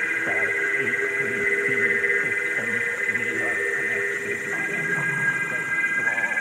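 Psychedelic electronic music in a beatless passage: sustained synth drones with repeated warbling, chirping synth sounds over them.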